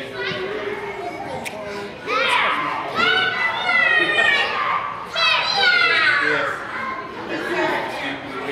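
Children's high-pitched voices shouting and calling out in play, growing loud about two seconds in and continuing in bursts until near the end.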